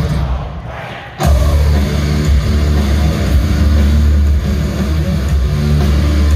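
Live rock band in an arena, recorded on a phone: the music dies down for about a second, then the full band comes crashing back in, loud, with heavy low electric guitar and bass.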